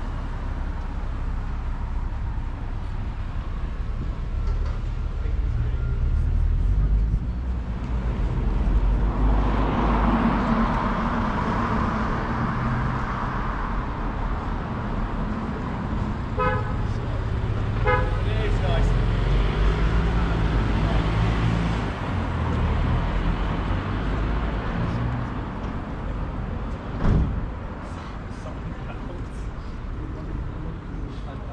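Street traffic: a motor vehicle's engine rumbling close by and a car passing, with two short car-horn toots about halfway through. A single sharp knock comes near the end.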